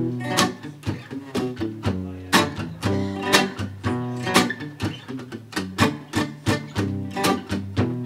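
Acoustic guitar strummed in a steady rhythm of chords, with no voice over it.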